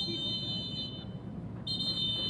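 Referee's whistle blowing the final whistle to end the match: two long, steady, shrill blasts of about a second each, the second starting near the end.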